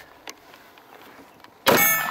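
A single 9mm shot from a SIG Sauer P6 (P225) pistol, about a second and a half in: sharp and loud, with a short ringing tail.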